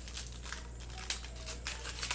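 Foil wrapper of a trading-card pack crinkling as it is torn open by hand, in irregular crackles that are loudest about a second in and near the end.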